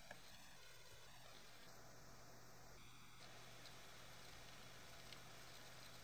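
Near silence: faint steady room tone with a low hum.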